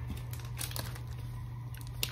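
Foil-lined wrapper of an energy bar crinkling a few times as it is handled, faint over a steady low hum.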